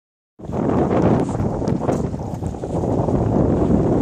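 Strong wind of about 20 knots buffeting the microphone on a sailboat's deck: a loud, uneven rumble that starts about half a second in.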